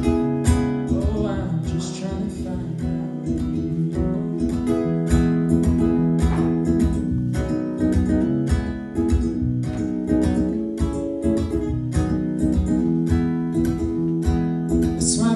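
Acoustic guitar strummed in a steady rhythm, an instrumental passage between sung verses of a folk song.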